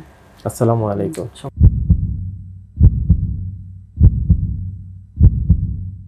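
Heartbeat-style sound effect: four deep double thumps about a second and a quarter apart, each dying away, the last fading out near the end. A moment of speech comes just before the first thump.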